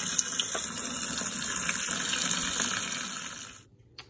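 Cold tap water running in a steady stream onto blanched broad beans and peas in a stainless-steel colander, cooling them to stop the cooking. The water sound fades out near the end.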